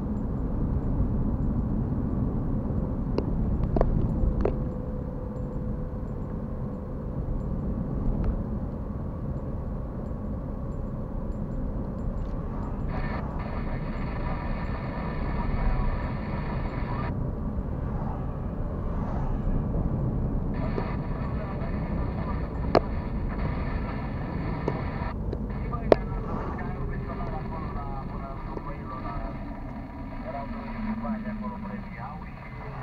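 A car driving, heard inside its cabin: steady low engine and road rumble, with a few sharp clicks. From about 13 seconds in a faint voice-like sound comes and goes over it.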